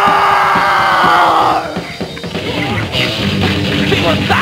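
Rock band playing live, recorded from within the crowd. A long held note slowly falls in pitch over the band and stops about a second and a half in, then drums and distorted guitar carry on a little quieter.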